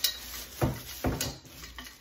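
Metal tube parts of a rolling garment rack clinking against each other as they are handled, three knocks about half a second apart, with plastic wrapping rustling.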